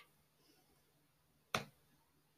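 A single sharp computer mouse click about one and a half seconds in, against faint room tone.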